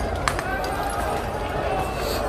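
People's voices over steady street noise, with one sharp crack or bang about a quarter of a second in.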